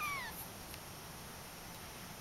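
A Persian kitten gives one short, high mew that falls in pitch, right at the start.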